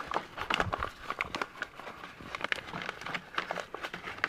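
Padded paper mailer envelope crinkling and rustling in the hands as a roll of drive belt is pulled out of it, a run of small irregular crackles and clicks.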